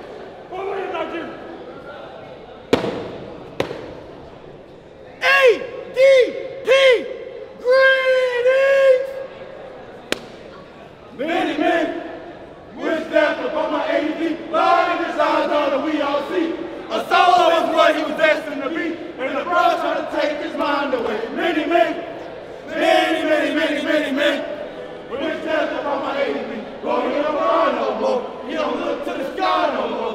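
A line of young men chanting and calling out together in unison. There is a single sharp smack about three seconds in, then several loud short calls that swoop up and down, and from about eleven seconds a sustained group chant with crowd voices under it.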